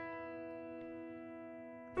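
Software piano holding an E over a sustained low E, the notes ringing and slowly fading. A new note sounds right at the end.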